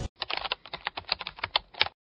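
A rapid, uneven run of light clicks, about a dozen in under two seconds, like fast typing on a keyboard.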